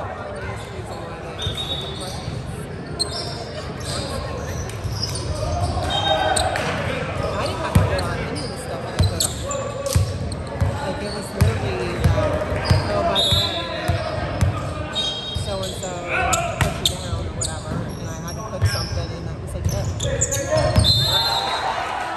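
Volleyball play on a hardwood gym floor: a string of sharp ball hits and bounces, most of them from about a third of the way in, with sneakers squeaking and players' voices echoing in the large hall.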